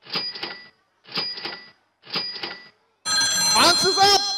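Quiz countdown timer sound effect: three sharp clock-like ticks about a second apart. About three seconds in, a loud ringing bell-like alarm sounds to signal that thinking time is up.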